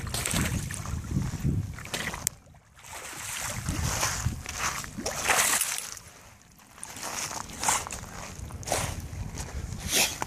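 An American Pit Bull Terrier paddling and splashing through shallow water, in uneven surges of sloshing with two brief lulls. The heaviest splashing comes a little past the middle, as the dog thrashes at the surface before climbing onto a rock.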